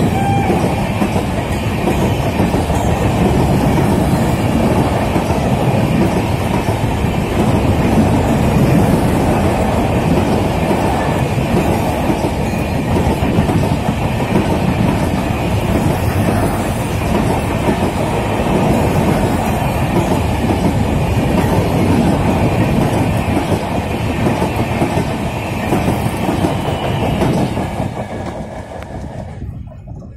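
Passenger coaches of an express train running past at speed: a loud, steady rush of wheel and rail noise. It fades away over the last two seconds or so as the last coach passes and the train pulls off into the distance.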